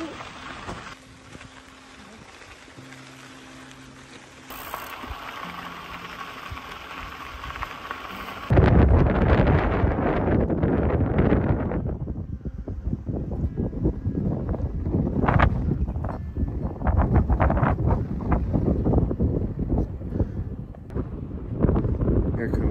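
Wind buffeting the microphone, gusting up and down. It starts suddenly about a third of the way in, after a quieter stretch of steady hiss with a faint hum.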